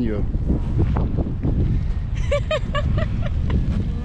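Wind buffeting the microphone: a steady low rumble. A short burst of voices comes about two seconds in.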